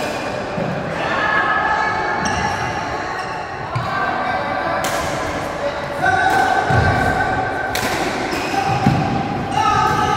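Badminton rackets striking the shuttlecock in a doubles rally, a sharp crack about every second or two, with players' footsteps thudding on the wooden court floor.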